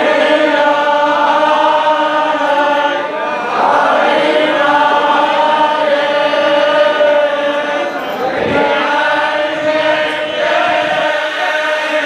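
A group of men chanting hymns together in unison, holding long steady notes, with brief breaks about three and a half and eight and a half seconds in.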